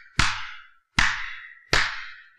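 One person's slow, mocking hand claps, three of them about three-quarters of a second apart, each with a long echoing tail.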